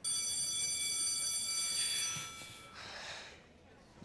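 Electronic school bell sounding one steady, high tone for about two seconds, then cutting off. A soft breathy sound follows.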